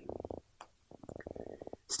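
Marker dragging across a whiteboard, a faint, low rapid chatter in two short strokes: one at the start and one from about a second in.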